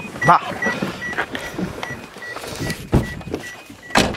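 A car's warning chime beeping rapidly and evenly, about four to five short high beeps a second, the alert for the headlights being left on with a door open. A few knocks and thumps from inside the car sound over it, the loudest about three seconds in.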